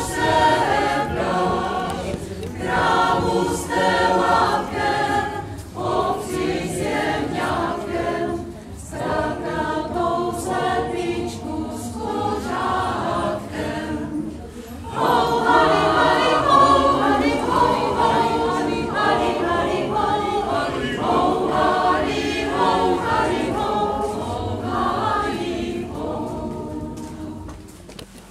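Mixed choir of men and women singing a Czech folk song in parts, with a short break between phrases a little past the middle and the sound tapering off near the end.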